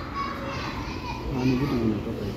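Background chatter of children's and other voices, with one faint voice heard more clearly about halfway through.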